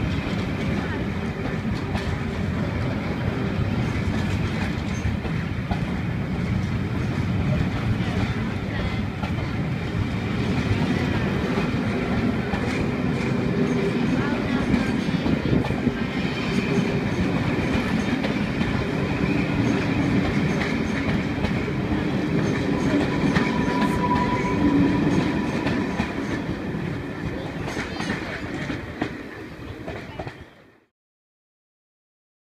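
Train of maroon passenger coaches rolling past at close range, the wheels clattering rhythmically over the rail joints. A brief high squeal about three-quarters of the way through, and the sound fades away near the end.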